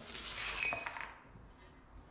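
Ceramic tile offcuts clinking and clattering against each other as they are handled, with a short bright ring. It lasts about a second, then dies away.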